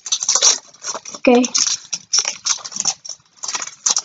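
Foil wrapper of a Pokémon TCG booster pack being torn open and crinkled by hand: an irregular run of crackly rustling.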